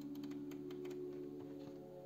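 Paper pages of a softcover coloring book flipped by hand: a quick run of light flicks and rustles. Under it, background music with a few held tones.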